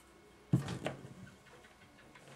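Wood-mounted rubber stamp set down onto a paper tag on the table with a soft knock about half a second in, then a lighter tap, then pressed down with little sound.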